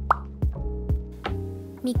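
Light background music with a steady beat, with a short rising pop sound effect just after the start. A voice begins speaking at the very end.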